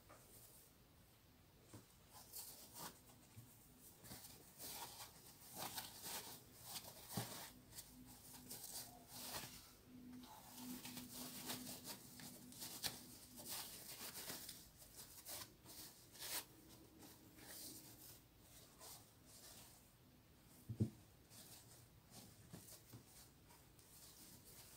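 Faint rustling and crinkling of cloth and thin tulle as a small fabric pouch's lining is pushed and smoothed inside it by hand, with a couple of soft bumps.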